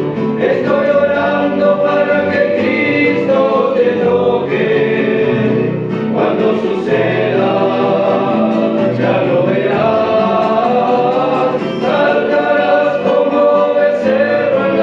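A men's vocal group singing a Christian gospel song in harmony.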